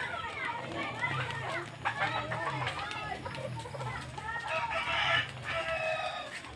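Hens clucking and calling in a coop, with a louder, longer call near the end.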